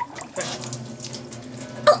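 Water from a hose pouring into a boat engine's fresh-water cooling system, a steady rush with faint low tones as the system fills up. A brief loud pitched sound comes just before the end.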